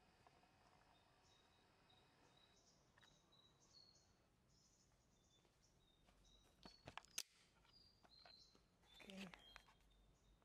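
Near silence with faint, short high bird chirps repeating throughout. A few sharp clicks come about seven seconds in, and a brief rustle about nine seconds in.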